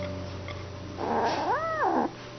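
A domestic cat gives one short meow near the end, starting rough and then rising and falling in pitch.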